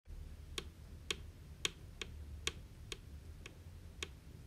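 High-heeled footsteps from a fashion doll's hard plastic sandals, tapping a hard floor in about seven sharp, evenly spaced clicks, roughly two a second, over a low steady hum.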